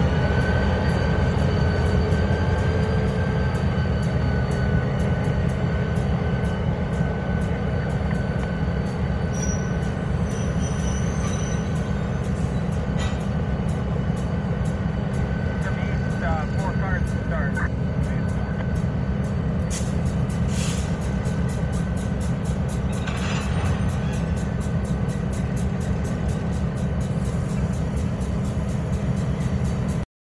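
Diesel locomotive running as it pulls a train of freight cars away, a steady low engine rumble with a thin steady whine above it.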